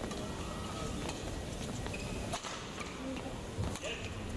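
Badminton arena ambience: a steady crowd murmur with scattered faint clicks and knocks from the court.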